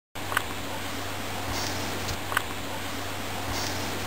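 Steady hiss-like noise with a low, even hum under it and two faint short clicks, about two seconds apart.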